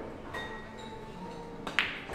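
A pool shot: the cue tip striking the cue ball and the balls clicking against each other. There are two sharp clicks, and the louder one comes near the end.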